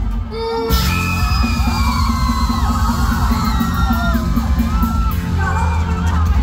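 Live band playing a loud dance track with heavy bass and drums, with the crowd screaming and cheering over it. The band drops out briefly at the start and crashes back in just under a second in.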